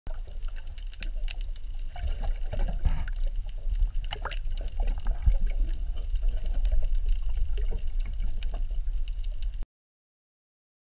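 Underwater sound of the sea: a low rumble of moving water with scattered sharp clicks and crackles. It cuts off suddenly near the end.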